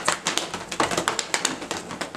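Quick run of hand claps and slaps, about five or six a second, from two people playing a hand-clapping game.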